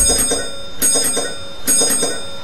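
Bus bell ringing: a high metallic ring struck rapidly in repeated bursts, a little under one burst a second.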